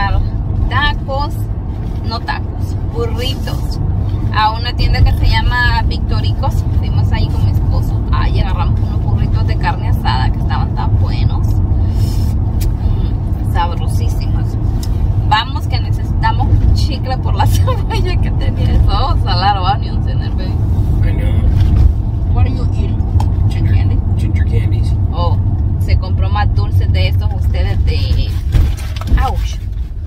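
Steady low rumble of road and engine noise inside a moving car's cabin, heard under a woman's intermittent talking.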